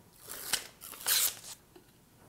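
Yellow backing paper being peeled off double-sided tape on a plywood piece, in two short ripping bursts about a second apart.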